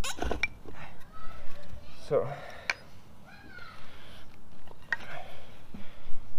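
A few short, sharp wooden clicks and knocks as a bow drill set (spindle, bow and bearing block) is handled and adjusted, with no steady back-and-forth drilling. A man says "so" about two seconds in, and faint voices can be heard in the background.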